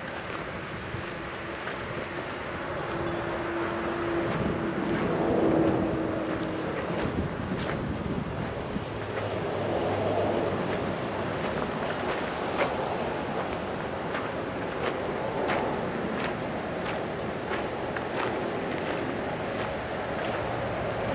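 Outdoor background noise with wind on the microphone, and a steady hum that swells to its loudest about five seconds in. From about seven seconds in, light footsteps on a gravel path tick at irregular intervals.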